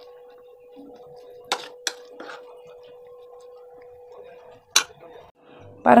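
Cubes of paneer with chopped onion and capsicum being tossed by hand in a thick masala in a bowl: soft scattered taps and clicks, a few about a second and a half in and one shortly before the end, over a faint steady hum.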